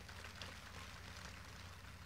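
Faint steady hiss with a low electrical hum in a gap between spoken sentences.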